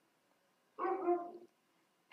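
A single short pitched vocal sound, under a second long, near the middle of an otherwise quiet stretch.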